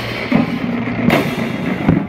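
Marching band playing, heard close up beside a marching bass drum: held low notes with drum strokes, and a heavy bass drum hit near the end.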